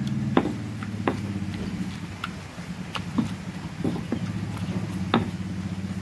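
A pestle crushing chopped tomatoes in a stone mortar, with irregular sharp knocks of the pestle against the stone about once a second, over a steady low drone.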